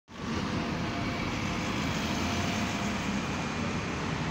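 Steady road traffic noise as cars and vans pass through a junction.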